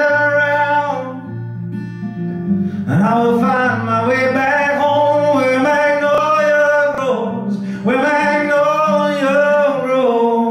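A man singing live to his own strummed acoustic guitar, in long held notes. The voice drops out for about two seconds shortly after the start and again briefly near seven seconds, while the guitar keeps playing underneath.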